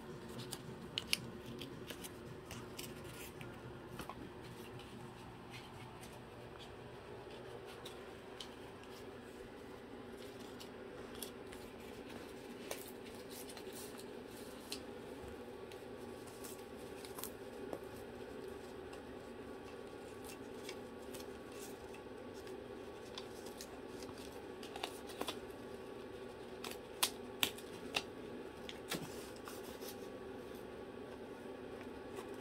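Cockatoo's beak handling paper dollar bills: scattered crisp crinkles and sharp clicks, in clusters near the start and again near the end.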